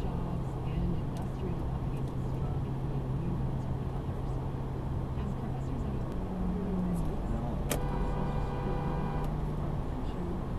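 Steady road and engine noise of a car at highway speed, heard inside the cabin, with a constant low hum. About eight seconds in, a clear pitched tone starts suddenly and holds for about a second and a half.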